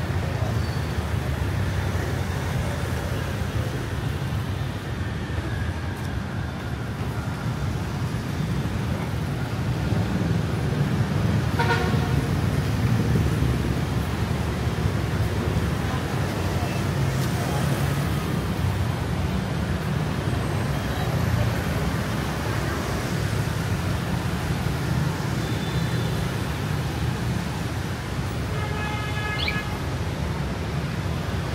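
City street traffic of motorbikes and cars passing, a steady rumble. A horn sounds briefly about twelve seconds in, and another short horn-like tone comes near the end.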